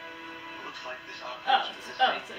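Audio of a TV drama episode: a held note of background music, then voices starting about half a second in, loudest near the end.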